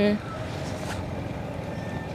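A sung note stops just after the start, leaving a steady, even rushing noise from riding along the road on a motorcycle: wind and engine noise on the move.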